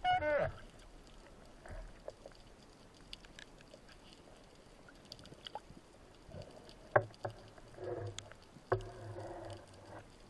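A band-powered speargun firing underwater: a loud, brief twang with a ringing tone right at the start as the shaft is released. Quieter clicks and knocks follow, with one sharp click about seven seconds in.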